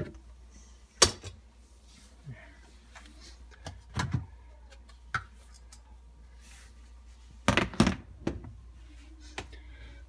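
Plastic clicks and knocks from a Maytag dishwasher's lower filter assembly being handled and slid out after its clips are released: a sharp click about a second in, a few lighter knocks around four and five seconds, and a quick cluster of knocks near the end.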